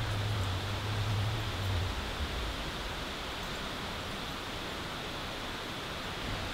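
Steady outdoor background hiss with a low hum that fades out about two seconds in.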